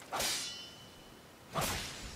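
Two swishing sword-slash sound effects from an anime fight, about a second and a half apart, each a sharp rush that fades quickly.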